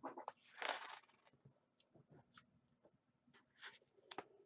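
Small hard plastic counting tokens clattering together as they are handled, in a short burst of clicks and clinks about half a second in, with a few faint ticks after. A brief rustle of a laminated card on a wooden tabletop near the end.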